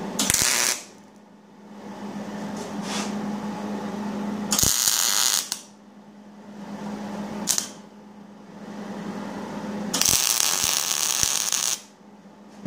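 Millermatic 180 Auto-Set MIG welder tacking and welding a 1/4-inch rod ring: four bursts of arc crackle, a short one at the start, one about a second long, a brief one, and a longer one of about two seconds near the end. A steady low hum runs underneath.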